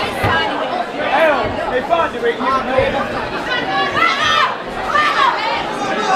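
Boxing crowd shouting and cheering, many voices overlapping at once.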